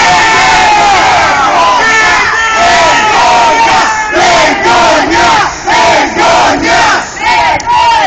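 Loud crowd of protesters shouting together; about halfway through the shouting falls into a rhythmic chant of about two beats a second.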